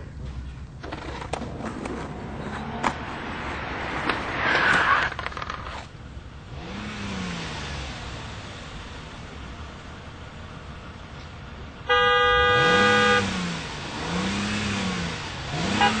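A car horn gives one long blast of about a second, while the engine revs in several rising-and-falling swells; short repeated toots begin right at the end. Before that come a skateboard's rolling and clacks.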